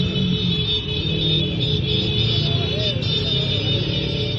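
Motorcycle engines running steadily as a convoy rides slowly along a street, with music playing over them.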